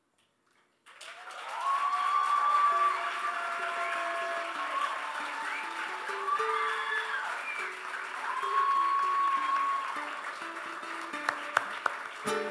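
A theatre audience breaks into applause and cheering about a second in, with loud drawn-out whoops or whistles. Under it a guitar plays a stepping melody that grows clearer near the end.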